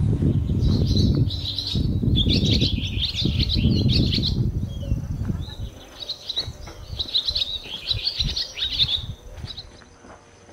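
Small birds chirping in rapid twittering runs, one in the first half and another a couple of seconds later. Under the first half there is a louder low rumble that dies away about halfway through.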